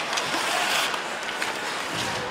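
Ice hockey game sound during live play: a steady arena crowd noise with the scraping of skate blades on the ice and a few faint sharp clicks.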